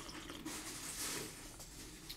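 Faint sipping and swallowing of coffee from a mug.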